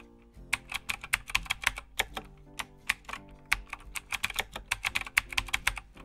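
Typing on a computer keyboard: quick, irregular runs of keystrokes starting about half a second in, over soft background music.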